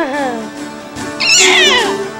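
A baby squealing with delight: a short falling vocal sound at the start, then a very high, wavering squeal about a second in, over background music.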